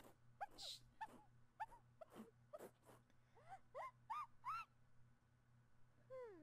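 Faint, high-pitched cartoon squeaks from a pink chipmunk character's voice: a string of short, arching little calls that rise higher in pitch toward the end.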